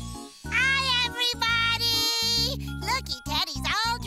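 A short children's-TV musical sting with bright twinkling chime tones over held low notes, the sparkle sound of a scene change. Near the end a high, childlike character voice makes brief sounds.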